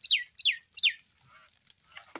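A bird calling three times in quick succession, each note a sharp, high whistle that falls steeply in pitch.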